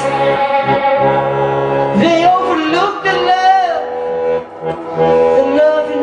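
Live music: a singer holds a long, wavering vocal line over sustained accordion chords, with no words heard.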